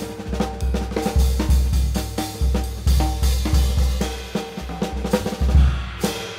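Jazz drum kit played with sticks: a busy, fast run of snare, bass drum and cymbal strokes.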